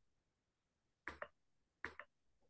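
Two short, sharp clicks about three quarters of a second apart, over near silence.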